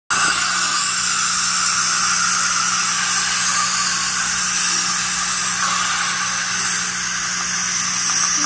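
Dental high-volume suction running steadily: an even loud hiss over a low hum.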